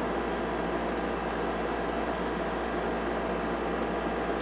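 Steady room noise: an even hiss over a low hum, with no distinct events standing out.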